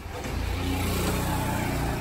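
A motor vehicle passing on the street, its engine hum swelling and then easing off as it goes by.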